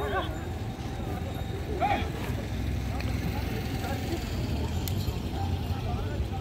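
Brief, indistinct calls from people's voices, once right at the start and again about two seconds in, over a steady low rumble.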